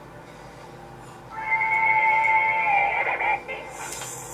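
Soundtrack of a rap music video's intro playing back: after a quiet stretch, a held high note with a steady pitch comes in about a second and a half in and wavers near the end.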